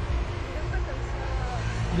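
Steady low rumble of city street traffic, with faint voices of passers-by.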